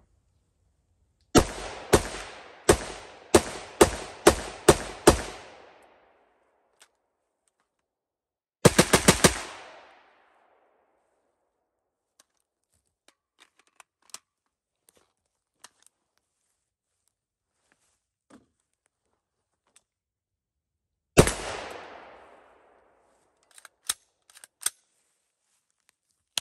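AR-15 rifle built on a LAW Tactical ARM-R upper, fired with its stock folded. Eight shots come over about four seconds, then a very fast string of about six shots around nine seconds in, and a single shot about 21 seconds in, each followed by a short decaying tail. A few fainter sharp cracks come near the end.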